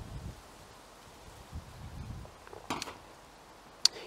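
Quiet background with a brief soft noise about two-thirds through, then a single sharp click near the end as a stemmed glass of beer is set down on a metal tabletop.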